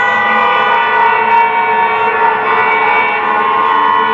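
Marching band holding one long, loud, sustained chord, many pitches sounding together without a break.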